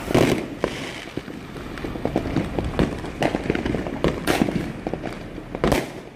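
Aerial fireworks going off: a steady run of bangs and crackles from bursting shells, with louder bursts near the start, about four seconds in, and just before the end.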